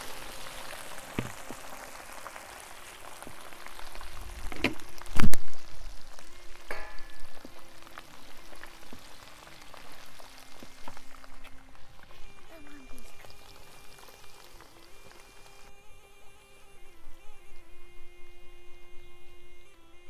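Hot oil sizzling and spattering as ground red peppers are tipped into a large pot of it. The hiss dies down after about ten seconds, and there is a loud knock about five seconds in.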